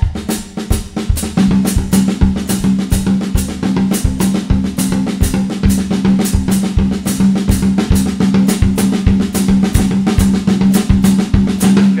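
Drum kit playing a coordination exercise: a syncopated, accented right-hand figure on the rack tom over a steady cascara pattern in the left hand, with a repeating bass drum foot pattern underneath. A continuous stream of strokes runs over a steadily ringing tom pitch.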